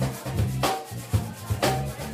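Live salsa band playing: an electric bass line under drums and percussion, with a sharp hit about once a second and lighter strokes between.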